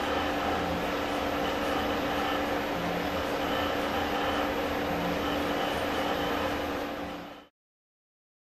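Steady mechanical hum with an even hiss, fading out sharply near the end.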